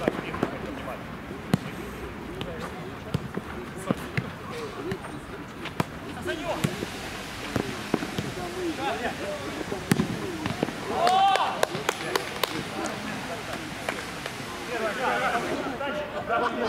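Players calling and shouting to each other during a mini-football game, with scattered sharp thuds of the ball being kicked. A louder shout comes a little past the middle.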